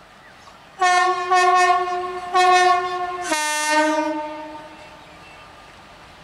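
Electric locomotive's air horn sounding as the train approaches. It starts about a second in with three blasts in quick succession, then steps down abruptly to a lower note that fades out about five seconds in.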